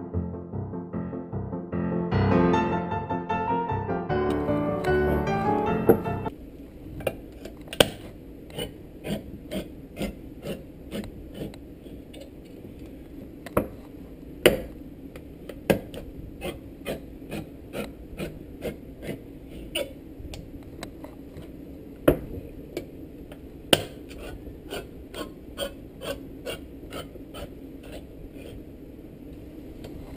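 Piano music for about the first six seconds, then a handheld crank can opener working its way around the rim of a tin can: a long run of irregular clicks and rasping turns with a few louder snaps, over a steady low hum.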